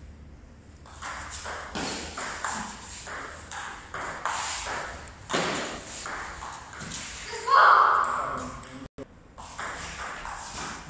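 Table tennis rally: the ball clicks back and forth between paddles and the table in a quick, irregular run of sharp pings, ringing in a large, echoing hall. A brief loud voice cuts in about three-quarters of the way through.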